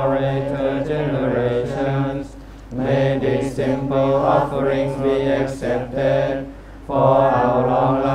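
Group of young novice monks chanting a Buddhist devotional chant in unison, on long held notes, with two short breath pauses, about two and a half and six and a half seconds in.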